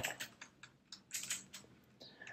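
Computer keyboard being typed on: an irregular run of light key clicks, several a second.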